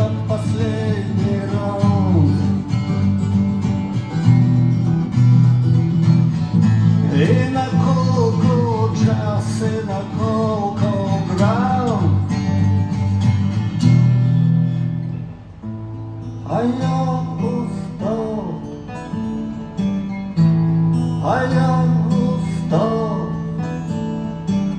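Two acoustic guitars playing live, strummed chords under a melodic line that bends up and down. The playing softens about halfway through, then builds again.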